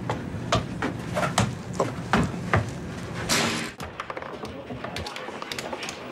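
A soccer ball being juggled: short soft knocks of the ball on foot and knee, roughly two a second. A little over three seconds in comes a brief rush of noise, followed by lighter, quicker clicks.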